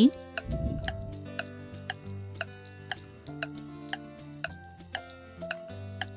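Quiz answer-time background music: a clock-like tick twice a second over soft, held musical notes.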